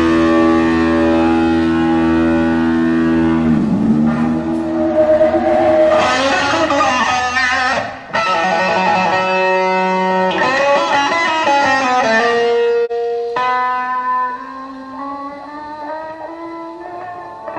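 Electric guitar solo of long held notes with string bends and vibrato; about four seconds in one note dips down in pitch and swings back up. The playing gets quieter near the end.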